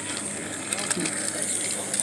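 Battery-powered toy train's small motor and plastic gears running steadily, with faint light clicks.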